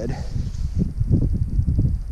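Wind buffeting the microphone in a low, uneven rumble, with a faint, fast ticking high up from about the middle.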